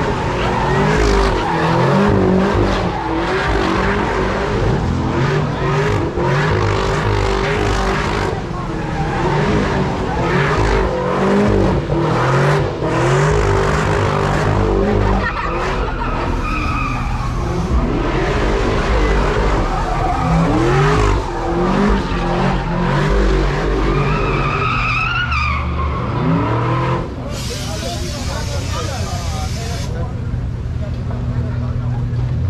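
Car engine held at high revs, its pitch wavering up and down, with tyres skidding on the asphalt in a burnout or donut. Crowd voices run underneath. About 27 s in the revving falls away and a steadier hiss takes over.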